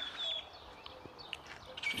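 Quiet outdoor background with a few faint, short bird chirps.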